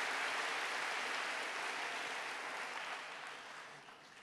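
Audience applause, dying away over a few seconds and fading out near the end.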